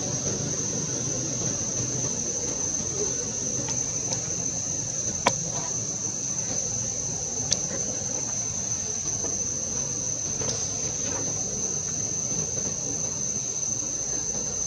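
Steady, high-pitched drone of an outdoor insect chorus, with a couple of faint sharp clicks partway through.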